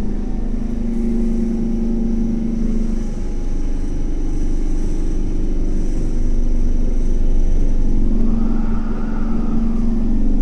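Kawasaki C151 metro train running, heard from inside the passenger car: a steady rumble of wheels on rail with a steady hum from the train's drive. Near the end a higher tone swells and fades away.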